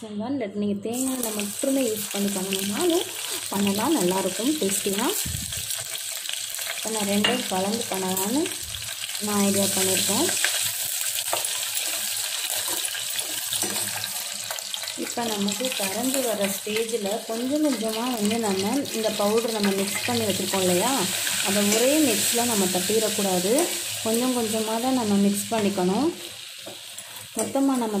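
A metal wire whisk stirring round and round a steel bowl of hot liquid, scraping the bowl with a repeating rhythm of strokes over a steady sizzle.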